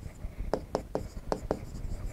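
Pen writing on an interactive touchscreen board: a handful of short, sharp taps and strokes as words are written.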